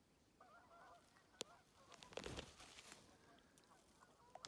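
Faint waterfowl calling on a pond in short, repeated notes, with a sharp click and then a splash about two seconds in.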